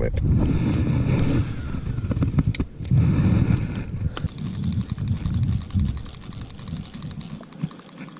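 Wind rumbling on the microphone with some handling knocks, then, from about four seconds in, a fast, even ticking from an antique fishing reel as it runs.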